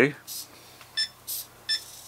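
Two short electronic beeps from the ToolkitRC ST8 servo tester as its dial is turned, about a second in and again near the end. Between them come short whirs of a small servo swinging between its two set points about once a second.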